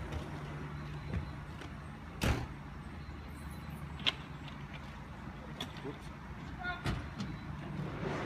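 Engines of police cars and a truck running slowly at low speed, a steady low rumble. Sharp knocks of vehicle doors come about two seconds in, about four seconds in and about seven seconds in.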